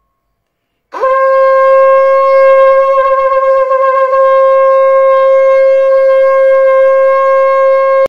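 A shofar (a long animal horn) blown in one long, steady blast. About a second in, the note starts with a quick upward scoop, then holds one pitch rich in overtones to the end, wavering briefly around four seconds in.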